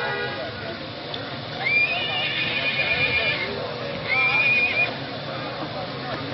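Two high, held whistle-like tones, each rising into a steady pitch: the first lasts about a second and a half, the second under a second, starting about a second after the first ends.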